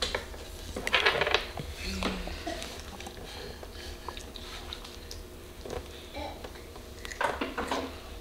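Glass jars clinking and being handled as chocolate milk is poured into a small glass mason jar, with a short cluster of knocks about a second in and another near the end.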